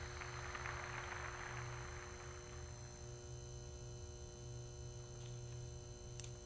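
A steady low hum with faint, even tones above it, under a hiss that fades away over the first two seconds or so; a faint tick near the end.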